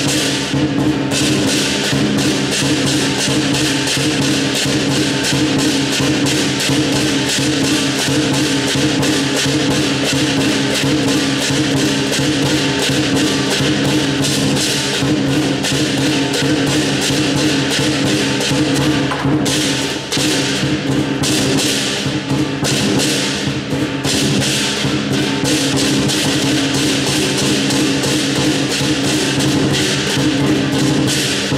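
Southern lion dance percussion playing continuously: a big drum beating under clashing cymbals and a ringing gong, with the cymbals briefly easing off a few times in the second half.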